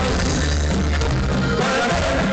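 Live band playing through a concert PA, with heavy sustained bass and drums, recorded on a phone from within the crowd.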